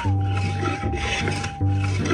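A 200-year-old wooden moulding plane cutting along a wooden board: its iron peels shavings in rasping strokes. Background music, a long held note over a bass line, plays underneath.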